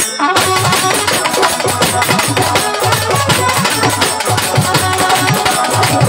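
Live Baul folk music played by a band: hand drums keep a brisk, steady beat under sustained melody lines, the music swelling back to full strength a moment after the start.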